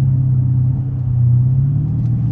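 Dodge Scat Pack's 6.4-litre HEMI V8 running with a steady low drone, heard from inside the cabin as the car slows on a light throttle.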